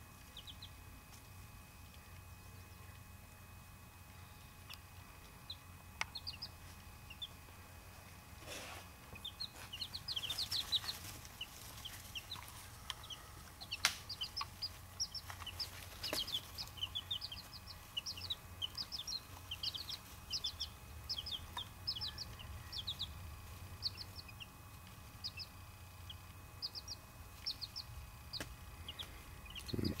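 A brood of Buff Orpington and bantam chicks, about three days old, peeping: many short, high-pitched peeps that start a few seconds in and grow thick and continuous after about ten seconds. A few faint knocks sound among them, over a steady low hum.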